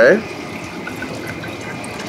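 Hot water poured from a glass jug into a one-litre glass Kilner jar, a steady pouring trickle as the jar fills.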